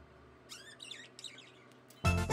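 Budgerigar giving a quick run of faint, high chirps about half a second in, with a couple of softer ones after.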